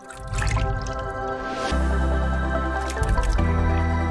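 Outro logo jingle: sustained synth chords over a deep bass that comes in about a second and a half in, laced with water-drop and splash sound effects and a rising whoosh.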